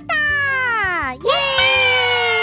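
A high-pitched voice gives two long drawn-out cries: the first slides down over about a second, and the second rises, then holds and slowly falls. Background music plays underneath.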